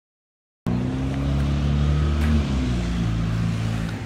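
A motor vehicle's engine running nearby with a steady low hum that drops slightly in pitch about halfway through, over wind noise on the microphone. The sound starts abruptly just under a second in.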